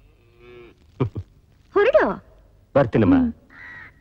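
Bullocks lowing: three short moos about a second apart.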